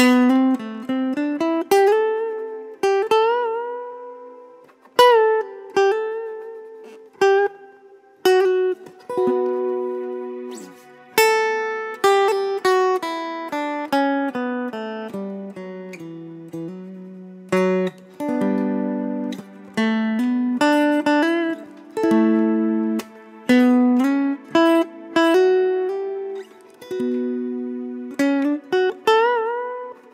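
McCafferty-Seifert model mountain dulcimer played through its magnetic pickup with reverb: a picked melody of ringing, decaying notes, some sliding up into pitch.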